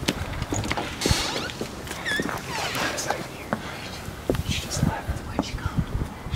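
Hushed whispering with footsteps and scattered clicks and knocks.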